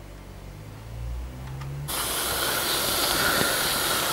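Faint low hum for about two seconds, then a sudden steady hiss from the boiler of a 1950s Linemar Atomic Reactor toy steam engine as it heats over burning solid fuel tablets, just before the engine starts to run.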